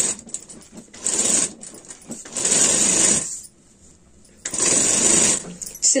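Domestic straight-stitch sewing machine stitching kurta fabric to a buckram collar piece, run in short starts and stops: four short runs, with a pause of about a second in the middle.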